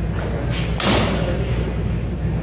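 A single sharp thud a little under a second in: a sword blow landing on a fencer's padded gear.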